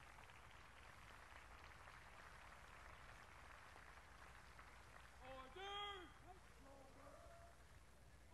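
Near silence with faint outdoor background; about five seconds in, a distant voice shouts one drawn-out word that rises and falls in pitch, a shouted command to troops in formation.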